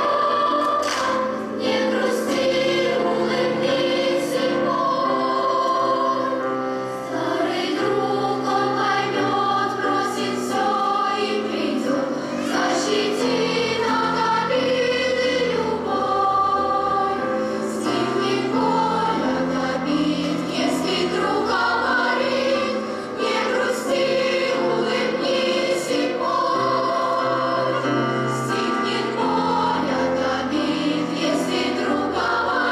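Children's girls' choir singing in many voices with grand piano accompaniment, continuous and steady in level.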